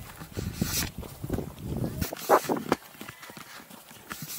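Hikers' footsteps on a dry dirt and stone trail, an irregular patter of steps, with short bits of talking in the middle.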